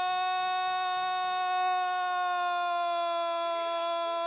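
A man's single long held shout of "gol" in Brazilian football commentary, one unbroken note sagging slightly in pitch.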